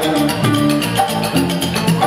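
Live Balinese jazz-fusion ensemble playing: electric guitar and electric bass with Balinese instruments, a bamboo suling flute, a struck keyed percussion instrument and kendang hand drums, over a fast, steady percussive pulse.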